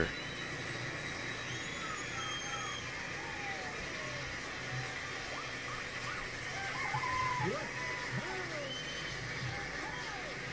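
Faint background ambience: a steady low hiss and hum, with scattered faint short chirps and distant voice-like sounds.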